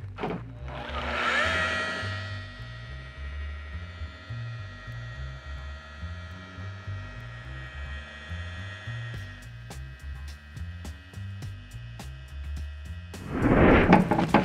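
Makita rotary polisher with a gray foam pad spinning up about half a second in, then running steadily with a whine as it works polish over car paint. Background music with a bass line plays underneath.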